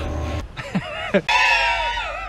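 A man's voice without words: the tail of a cheer, then high-pitched laughing that slides down in pitch and then holds a high note.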